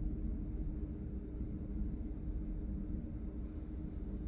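Steady low background hum and rumble with a faint constant tone, like room or appliance noise; no bird calls stand out.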